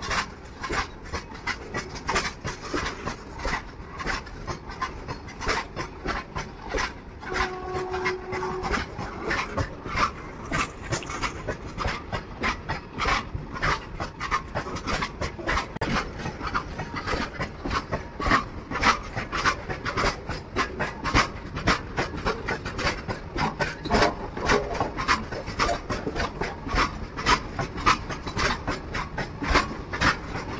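A loaded freight train of open-top steel wagons passing close by: a steady rumble and rasping hiss of wheels on rail, broken by a constant run of irregular clicks and clatters as the wheelsets cross the track. A brief steady tone sounds for about a second, about eight seconds in.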